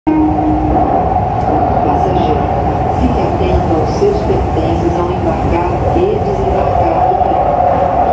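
Metro train running in a tunnel, heard from inside the passenger car: a steady, loud rumble of the wheels and running gear with a continuous hum above it.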